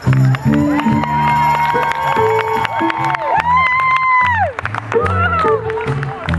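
Live swing band playing on under the introductions: a repeating bass line with a held melody line above it that swells and bends in pitch about halfway through. The audience cheers and whoops over the music.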